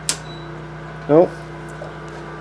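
A circuit breaker in a home electrical panel flipped on with one sharp click, followed by a steady low hum.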